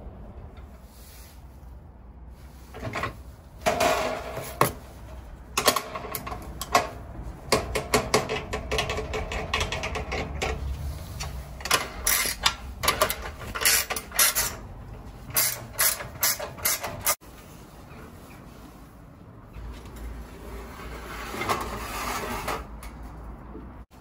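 A ratchet wrench clicking as it works the clamp bolt of a manual sheet-metal brake, mixed with metallic clanks and knocks from the brake's clamping bar and the galvanized steel sheet. The clicks come in quick runs through the first two-thirds, then the sound drops to a quieter stretch with a few lighter knocks near the end.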